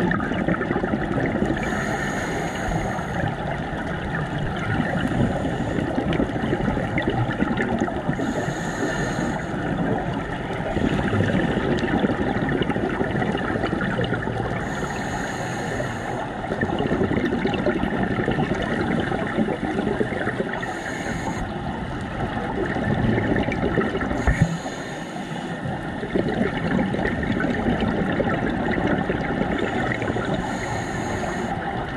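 Scuba regulator breathing heard underwater through a camera housing: a short hiss on each inhale about every six seconds, then a gurgling rush of exhaled bubbles. The cycle repeats steadily over a continuous muffled underwater noise.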